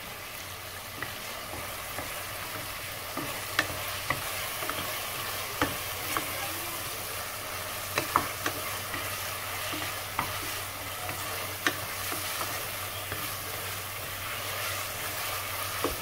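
Onions, ginger-garlic paste and tomatoes sizzling in hot oil in a pressure cooker pan as a wooden spatula stirs them. Scattered sharp knocks and scrapes come from the spatula against the pan.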